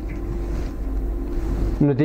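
Felt-tip whiteboard marker drawing strokes, a faint scratchy hiss that stops near the end, over a steady low rumble of room or microphone noise.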